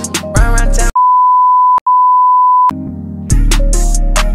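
Hip hop music cut out about a second in by a steady high-pitched censor bleep. The bleep lasts nearly two seconds with a split-second break in the middle, blanking out the song's lyrics, and the music comes back in near the end.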